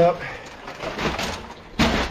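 Low rustling and handling noise with a few faint clicks, then a short, loud thump near the end.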